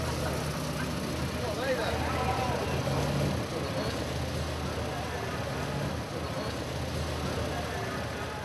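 Zolfe GTC4 sports car engine running at low speed, a steady low engine note as the car rolls slowly, with faint voices of people around it.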